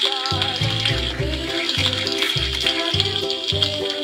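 Bouncy music with a steady bass beat over a steady sizzling hiss, the frying sound effect of a toy stove with a pan on its burner; the sizzle stops near the end.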